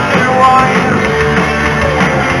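Live rock band playing loudly, with electric guitar and a singer's voice.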